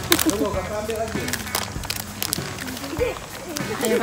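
Quiet chatter of children's voices, broken by a few sharp clicks.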